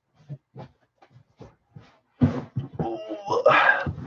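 A few faint clicks, then a person's voice in the second half, unclear vocal sounds without distinct words.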